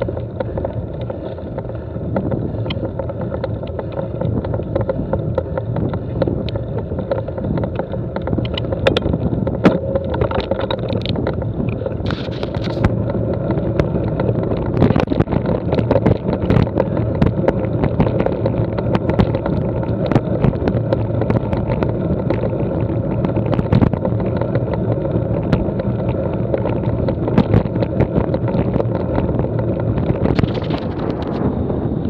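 Mountain bike rolling fast over a rough, stony dirt track: a continuous tyre rumble and rattle, with frequent sharp clicks and knocks from stones under the tyres and the bike's parts jolting. The knocks become more frequent in the second half.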